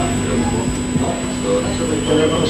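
Soyuz launch vehicle's rocket engines running at liftoff: a loud, steady roar with a low hum.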